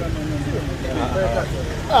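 Men's voices in casual conversation, with a steady low rumble underneath.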